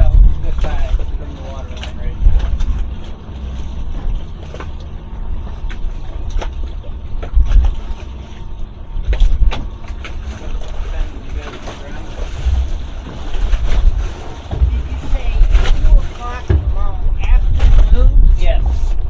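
Wind buffeting the microphone in uneven gusts, with scattered knocks and faint snatches of voices.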